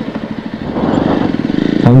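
Jawa Perak's single-cylinder engine running at low revs while riding slowly, its exhaust pulses coming through as a steady rapid beat that grows louder about halfway through.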